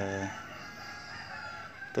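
A rooster crowing, one long call heard behind a man's drawn-out vowel, which trails off at the very start.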